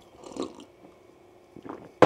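A person sipping a drink from a mug: a soft sip about half a second in, then another brief, faint mouth sound near the end.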